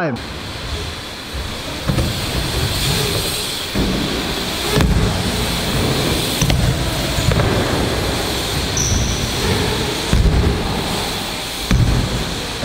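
BMX bikes rolling over plywood ramps in a large echoing hall, with several low thuds as wheels land and hit the ramps.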